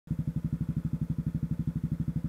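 Honda CB Twister's single-cylinder 250 cc engine idling, an even, low beat of about ten firing pulses a second.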